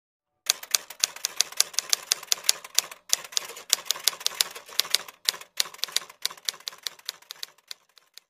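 Typewriter key-strike sound effect: a fast run of sharp clicks, several a second, keeping time with the letters being typed on, with brief breaks about three seconds in and again past five seconds.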